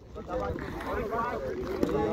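Several men's voices talking over one another in the background, with low wind rumble on the microphone.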